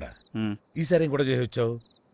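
Crickets chirping in short repeated trills as a steady night backdrop, under a man speaking.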